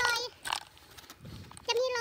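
A woman's voice speaking two short phrases, with faint footsteps crunching in snow in the quieter gap between them.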